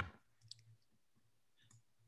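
Near silence, opening with one short sharp sound and followed by a few faint clicks.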